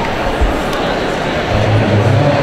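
Indistinct chatter of many voices filling a large gymnasium, with a low steady hum coming in near the end.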